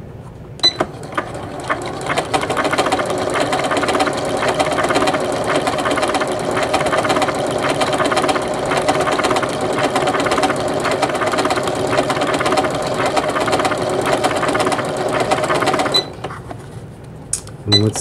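Janome MC9000 computerized sewing machine stitching a decorative stitch, with bobbin work in heavy silver thread. It starts about a second in, picks up speed over the first few seconds, runs at a steady stitching rhythm and stops abruptly about two seconds before the end.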